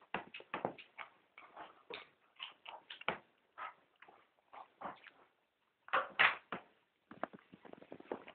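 An English Cocker Spaniel and a cat play-wrestling: a string of short, irregular scuffling sounds, with a louder pair of bursts about six seconds in.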